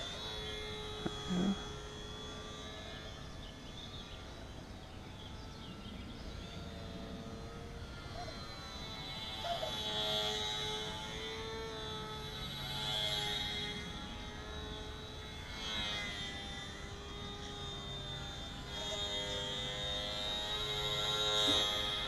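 Electric motor and propeller of a HobbyZone Sport Cub S RC plane whining in flight, from a distance. It swells louder as the plane passes closer, about ten seconds in, again a few seconds later and near the end. The pilot suspects the battery may be running low.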